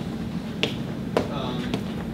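Footsteps on a hard classroom floor: two sharp steps about half a second apart, then fainter ticks, over a steady low room hum.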